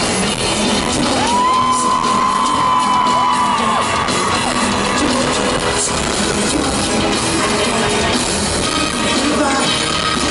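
Loud live concert music in a large arena, heard from the audience. About a second in, a long high note glides up, holds for about two seconds and falls away.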